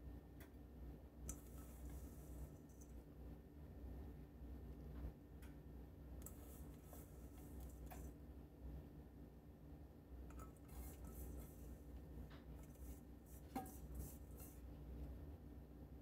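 Faint rustling and light ticks of crumb topping being sprinkled by hand from a stainless steel mixing bowl onto sliced apples, coming in short bursts a few seconds apart over a steady low hum.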